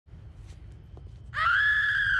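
A woman's long, high-pitched scream of terror as she falls, starting just over a second in, over a faint low rumble.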